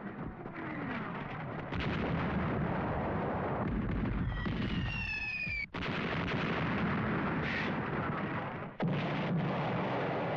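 Battle sound effects from a war film: continuous artillery fire and shell explosions. About four seconds in, a whistling tone is heard, which stops abruptly before the next blast.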